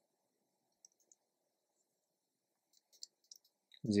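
Faint computer keyboard typing: two isolated keystroke clicks, then a quick run of several clicks near the end.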